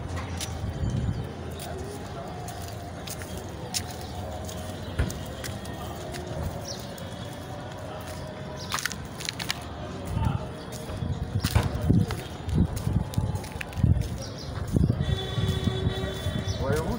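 Street sound picked up by a phone carried on foot: a low rumble with irregular thumps and knocks that grow stronger over the last few seconds, and faint voices in the background.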